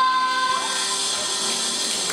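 A girl's held final sung note ends about half a second in, and audience applause rises in its place.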